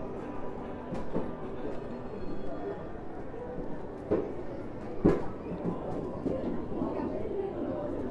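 Crowd chatter, many voices talking at once, with a few sharp knocks, the loudest about five seconds in.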